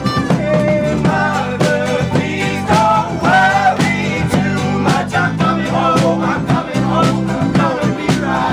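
Live acoustic folk band playing in a room: strummed guitar with a steady driving beat, and voices singing from about a second in.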